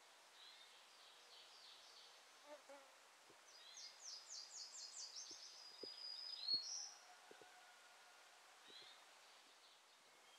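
A songbird sings a quick series of repeated high notes that grows louder for about three seconds and ends with a brief flourish, after a shorter faint phrase near the start. Soft footsteps fall on the forest trail beneath it.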